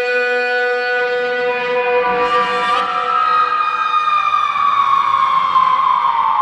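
Closing bars of a 1992 AOR pop/rock ballad: a long held chord, with a brief hiss-like swell about two seconds in. From about halfway, a lead tone glides slowly down in pitch.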